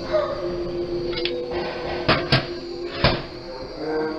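A few sharp clacks from a burnt-out dryer timer being handled, the loudest about three seconds in, over a steady low hum.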